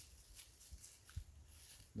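Faint crackle and rustle of dry fallen leaves underfoot, a few soft scattered crunches as a child shifts his feet on a leaf-covered mound.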